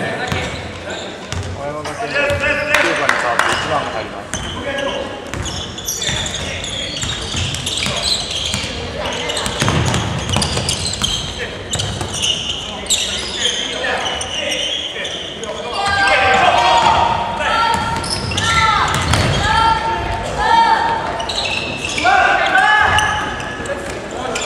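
Live basketball game on a hardwood court in a large gym: the ball bouncing, sneakers squeaking in short bursts, and players and benches shouting. The squeaks come often in the second half.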